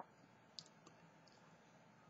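Near silence: room tone with a few faint short clicks in the first second and a half.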